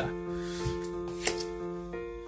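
Soft solo piano background music, sustained chords that change near the end, with a couple of light clicks of tarot cards being handled.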